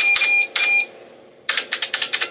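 Typing on a keyboard: rapid key clicks in two bursts, one at the start and another about halfway through, with a high steady tone ringing under the first burst.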